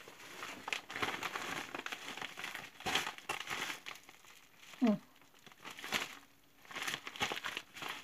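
Paper and an envelope crinkling and rustling in bursts as a piece of mail is handled and opened, with a brief hum-like voice sound near the middle.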